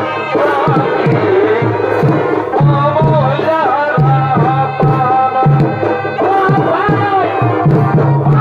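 Purulia chhau dance music: a wavering shehnai-like reed-pipe melody over steady rhythmic drumming.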